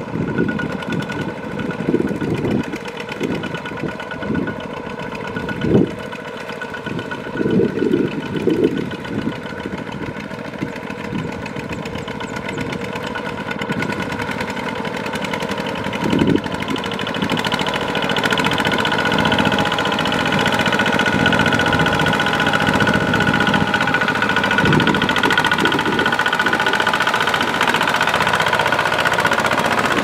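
Two-wheel walking tractor's single-cylinder diesel engine running under load as it hauls a loaded trailer through deep paddy mud. Irregular heavy thumps come through in the first half, and the engine grows louder and steadier from a little past the middle.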